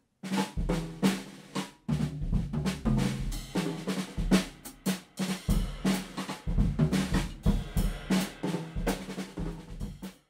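Drum kit playing a busy pattern of rapid snare and bass drum hits, with a short break about two seconds in.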